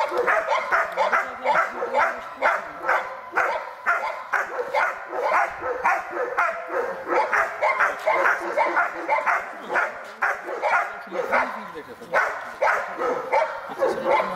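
German Shepherd barking rapidly and without letup, about three barks a second, at a helper hidden in a blind: the bark-and-hold stage of protection (Schutzdienst) training.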